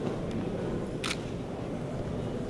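A camera shutter clicking once, sharply and briefly, about a second in, over steady low background noise in a large reception hall.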